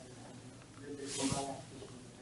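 Faint, distant voice of an audience member asking a question far from the microphone, heard over quiet room tone.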